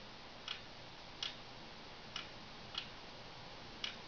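Clock ticking: five sharp ticks, unevenly spaced about a second apart, over a steady hiss.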